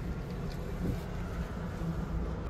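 A vehicle engine running steadily, a low hum and rumble with no distinct knocks or changes.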